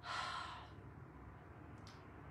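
A woman's sigh: a breathy exhale lasting about half a second. Near the end comes one brief faint click.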